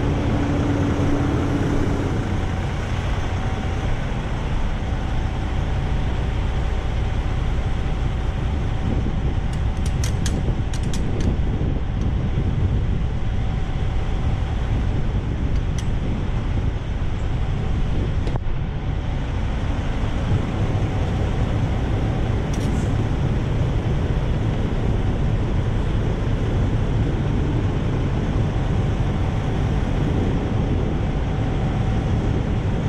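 Semi-truck diesel engine idling, a steady low rumble with a faint steady hum above it. A few light clicks sound about a third of the way in.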